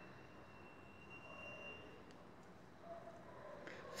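Near silence: faint room tone, with a faint high thin tone for about the first two seconds.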